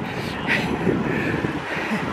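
An oncoming car drawing near on a narrow lane, its engine and tyres heard over the steady wind and road noise of a moving bicycle.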